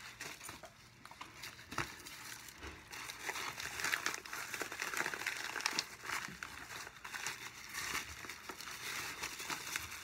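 Packaging being handled during an unboxing: irregular crinkling and rustling with scattered small clicks, starting about a second in and going on.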